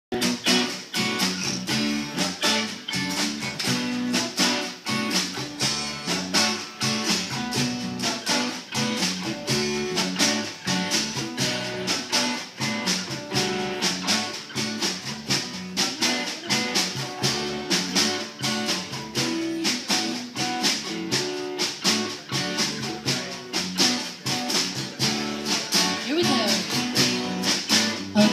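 Small live band playing an instrumental intro: strummed acoustic guitar with electric guitars over a steady beat, before the vocals come in.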